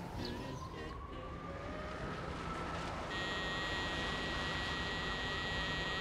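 Quiet outdoor street ambience: a low steady hum, a faint whine rising slowly over the first few seconds, then a steady high-pitched tone that sets in about halfway.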